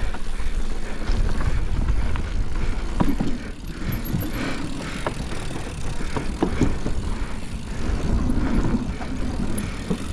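Mountain bike riding downhill at speed: knobby tyres rumbling over dirt and then over wooden boardwalk planks, with the bike rattling and scattered sharp knocks from the planks. Wind buffets the microphone throughout.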